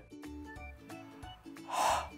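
Soft background music with a few held notes, and near the end a short, loud burst of breathy noise.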